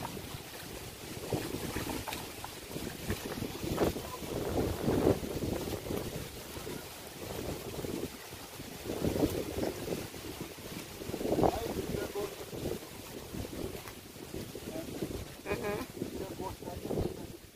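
Wind buffeting a phone microphone in uneven gusts while walking, with footsteps on loose stones.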